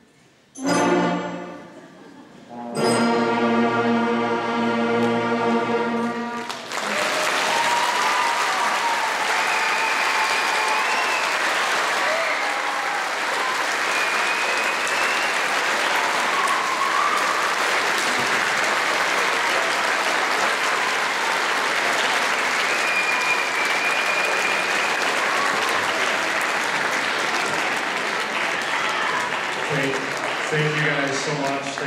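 A school concert band plays a short chord and then a long held final chord that cuts off about six and a half seconds in. The audience then applauds steadily, with a few cheers over the clapping.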